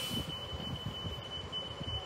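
A steady, high-pitched electronic warning tone from a 2023 New Flyer XD40 Xcelsior diesel city bus, held unbroken, over the low rumble of the bus's engine.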